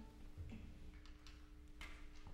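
Near silence: concert-hall room tone with a steady low hum and a couple of faint small clicks.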